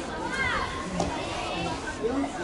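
Many children's voices calling and chattering over one another around an outdoor basketball game, one voice rising above the rest about half a second in. A single sharp knock comes about a second in.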